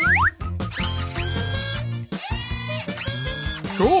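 Small motor of a toy nail-art machine whirring in two bursts of about a second each, with a short gap between, over children's background music.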